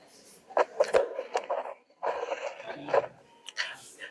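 Indistinct voices talking in a room, mixed with a few sharp clicks and knocks of handling noise.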